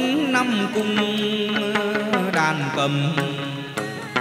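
Traditional Vietnamese chầu văn ritual music, played without singing: a held melody line that bends and slides in pitch, over regular sharp clicks of percussion.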